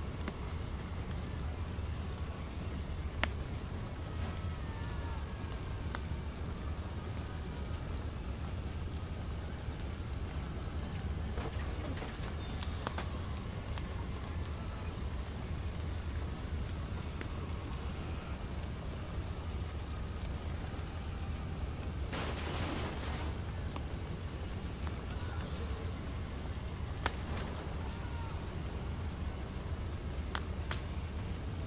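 Steady outdoor background noise: a low rumble with an even hiss over it, a few faint clicks and faint short chirps, and a brief louder rush of noise a little past two-thirds of the way through.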